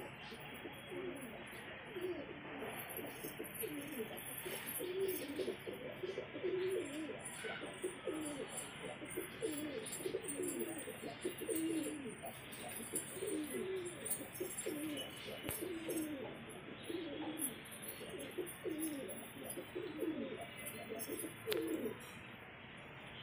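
Male highflyer pigeons cooing: a steady run of low coos, each a short phrase that dips and rises in pitch, repeating about once or twice a second.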